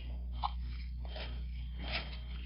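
Faint rustling and a couple of light knocks as a rubber-gloved hand handles objects on a plastic casting tray, over a steady low hum.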